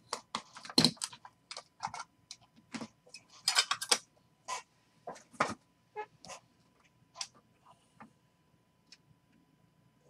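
Trading cards in hard plastic holders being handled and stacked: irregular clicks, taps and short slides of plastic on plastic and on the table, with a denser run of rustling and clicking about three and a half seconds in.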